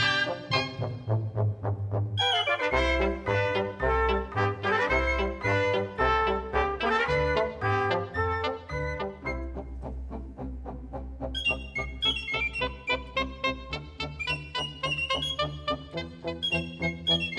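A cobla, the Catalan wind band of reed tibles and tenores, trumpets, trombone, fiscorns and double bass, playing a sardana. A steady bass line runs under the brass and reed melody, and a higher melody line comes in about two thirds of the way through.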